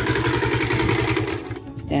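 Honda Nova Sonic 125's single-cylinder four-stroke engine idling steadily on its newly fitted carburetor. The engine sound drops away about one and a half seconds in.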